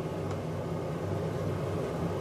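Steady low electrical hum with a faint fan-like hiss from an induction hob heating a large steel pot of stew, with a faint tick about a third of a second in.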